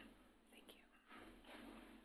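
Near silence: room tone with faint, quiet voices.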